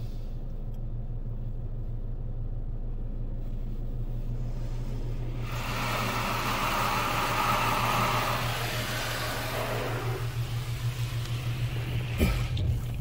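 Belanger Saber SL1 touchless car wash heard from inside the car: a steady low machinery hum, with the hiss of the gantry's spray on the car body swelling about halfway through as the arm passes overhead and fading near the end.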